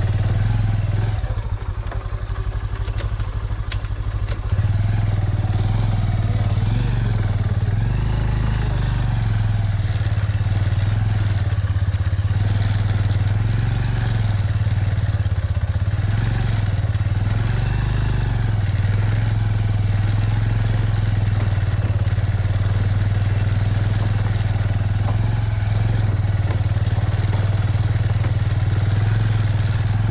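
Motorcycle engine running steadily while riding over a rough, rocky dirt track. The engine sound drops lower for a few seconds shortly after the start, then comes back up suddenly and holds.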